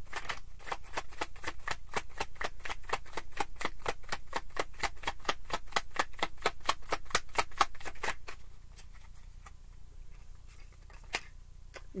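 A deck of tarot cards being shuffled by hand: a quick, even run of card slaps, about six a second, that stops about two-thirds of the way through.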